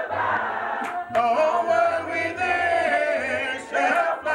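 Church congregation singing a hymn a cappella: many unaccompanied voices together, with short breaks between phrases.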